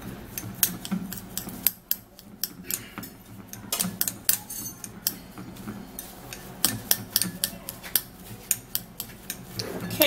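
A metal spoon scraping and clinking against a cut-glass bowl while stirring ground fenugreek seed into petroleum jelly: an irregular run of small clicks and scrapes.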